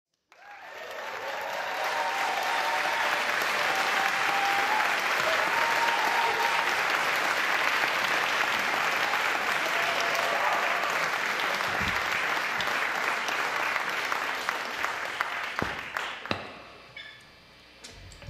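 Live audience applauding and cheering, with scattered whoops over the clapping. It swells in over the first couple of seconds, holds steady, and dies away about sixteen seconds in.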